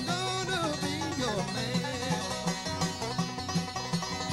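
Bluegrass band playing live, with banjo picking to the fore over guitar and a steady low rhythm. A held, wavering melody note fades out in the first second and a half, giving way to quick plucked runs.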